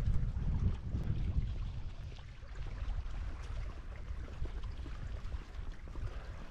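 Wind buffeting the microphone: an uneven low rumble, heaviest in the first second or two and then easing.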